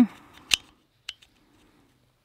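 Replacement blade of a Felco 600 folding saw being seated in its plastic handle: a sharp click about half a second in, then a fainter click about a second in.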